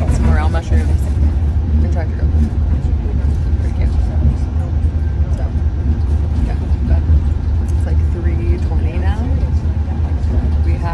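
Steady low rumble inside an Amtrak passenger car, with brief snatches of voice near the start and near the end.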